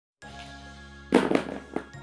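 Steady background music, with a loud crackling firework-style sound effect bursting in about a second in and dying away with a few pops over about half a second.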